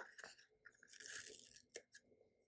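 Faint crinkling and rustling of paper sticker sheets being handled in a sticker book, with a short click near the end.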